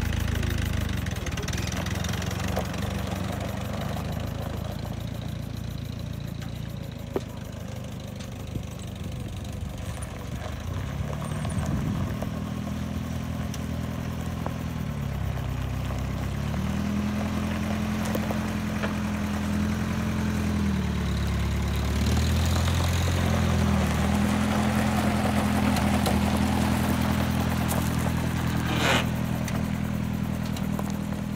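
Old open-top Jeep's engine running, first steady and then driving, its pitch rising and falling several times with the throttle. A short sharp noise comes near the end.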